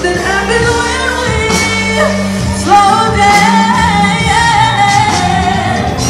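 Pop/R&B song performed live, a woman singing over a beat, with a long held, wavering note from about three seconds in.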